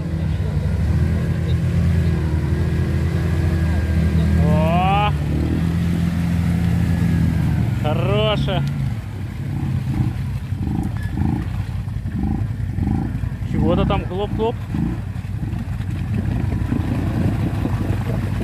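An ATV engine runs under load as the quad pushes through deep muddy water and bogs down. The engine note is steady at first, then pulses about twice a second from about halfway through. Short rising voice calls break in a few times.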